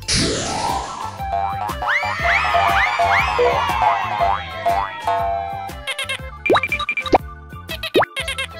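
Cartoon sound effects over bouncy children's background music: a whoosh with a rising sweep right at the start, then a quick run of about four springy boing glides, each rising and falling, a couple of seconds in, and short upward zips in the second half.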